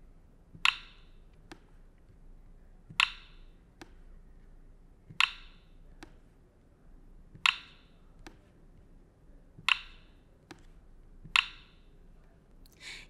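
Six sharp clicks about two seconds apart, each followed by a fainter tick: the Ozoblockly editor's snap sound as code blocks are dropped and click together.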